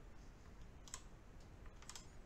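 Faint clicks and light scrapes of a small plastic spatula working thick textured mud paste over a small diorama base: one click about a second in and a quick few near the end.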